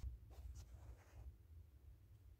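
Near silence, with faint scratchy rubbing in the first second over a low rumble: handling noise.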